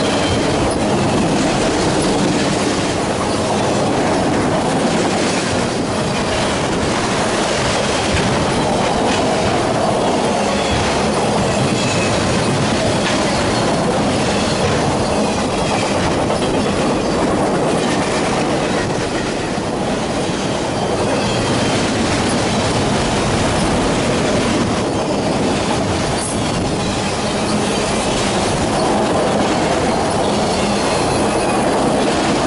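Autorack freight cars rolling past close by: a loud, steady rumble of steel wheels on rail, with faint high wheel squeals coming and going.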